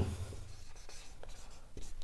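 Marker pen writing on a whiteboard: a few faint, short scratching strokes as a word is written.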